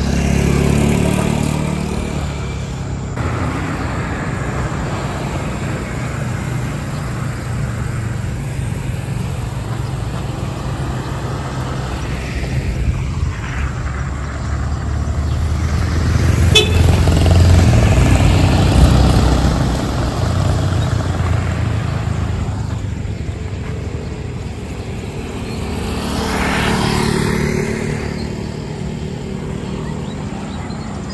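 Road traffic on a highway: vehicles passing one after another over a steady low rumble, with the loudest pass about halfway through and smaller ones near the start and near the end.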